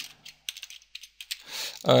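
Computer keyboard being typed on: a quick run of key clicks as a word is entered, stopping about a second and a half in.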